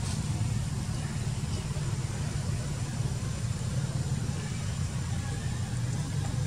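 A motor vehicle engine idling steadily, heard as an even low rumble.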